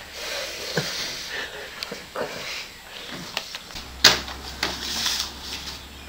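Scattered small clicks and knocks in a small room, with one sharp knock about four seconds in, the loudest sound.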